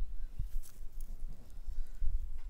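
Low rumble of handling noise on a handheld camera microphone, with a few faint knocks and clicks, as the camera is brought in close to a plant.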